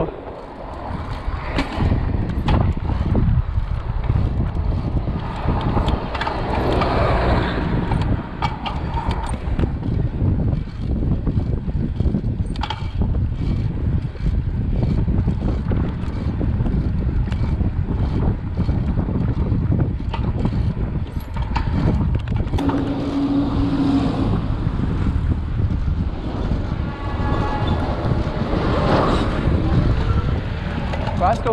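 Wind buffeting the microphone and tyre-on-asphalt rumble from a Gios FRX mountain bike being ridden along a street, with scattered clicks and rattles from the bike. A brief steady tone sounds about three-quarters of the way through.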